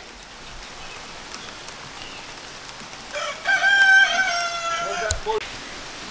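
A rooster crowing once, about three seconds in: a single drawn-out call of about two seconds that drops at the end. Light rain is pattering underneath.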